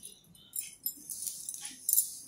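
Plastic basket-weaving wire strands rustling and scraping against each other as they are pulled through the weave, in several short swishes with light clicks.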